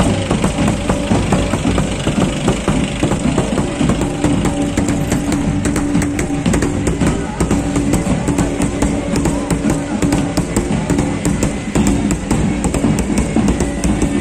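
Marching band drums beating in a quick, steady rhythm, with a steady held pipe-like tone under them through the middle, over a low rumble of slow-moving vehicle engines.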